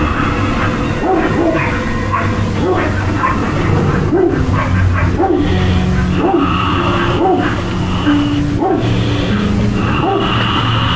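A dog barking repeatedly, roughly once a second, over music.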